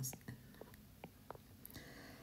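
A man's voice ends a short spoken word, then a quiet pause holding only a few faint, short ticks.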